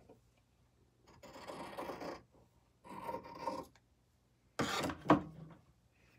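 Fabric scissors cutting through sewn cotton quilt fabric in two long rasping strokes, trimming a strip even and straight. Near the end come two sharp clacks as the scissors are put down on the sewing table.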